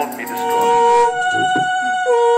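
Conch shells (shankha) blown together in long, steady held notes at two different pitches; one breaks off about a second in while the other keeps sounding.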